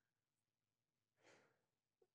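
Near silence, with one faint breath out through the nose or mouth about a second in from a man pausing to think.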